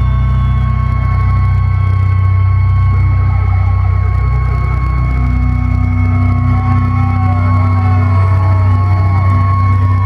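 Live metal band's amplified guitars and bass holding a droning final chord, with steady amplifier feedback tones ringing over it. A few whoops from the crowd come in over the second half.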